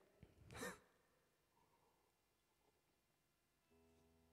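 A man's short sigh about half a second in, falling in pitch, then near silence. Near the end a faint steady chord-like tone begins.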